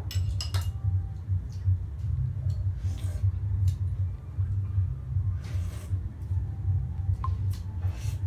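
A steady low hum with scattered light clicks and clinks of small hard objects, and a short rustle a little past halfway.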